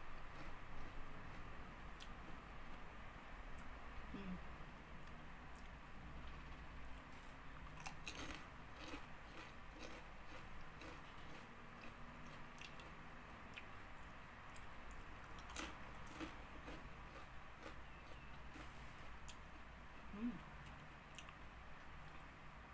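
Close-up chewing of crunchy ridged potato chips: irregular crisp crackles and snaps throughout, a few louder ones around the middle, over a low steady room hum.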